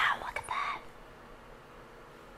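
A woman's breathy whisper over the first half-second or so, then faint room tone.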